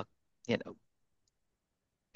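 A brief spoken phrase over a video call, then dead silence from the call's audio gating, broken only by one faint click about midway.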